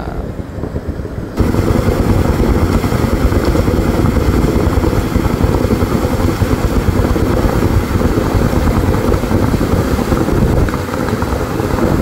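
Hot spring geyser jet spraying up into its stone pool: a loud, steady rushing of water that starts suddenly about a second and a half in.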